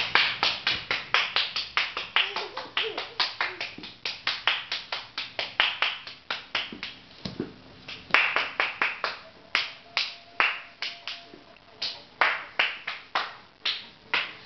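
Hand clapping in a fast, steady rhythm of about four to five claps a second, with a couple of brief pauses.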